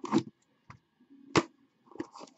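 A lidded cardboard trading-card box being opened by hand: a knock and a short scrape as the lid comes off, then a single sharp tap a little over a second later.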